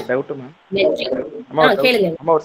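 Speech: a voice talking in short phrases over an online video call.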